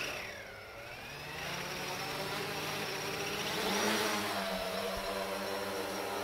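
Electric motors and propellers of a Foxtech Swan K1 H-wing VTOL aircraft, flying as a quadcopter, spooling up and lifting it off into a hover. The whine climbs in pitch and grows louder over the first few seconds, then holds steady with several tones at once.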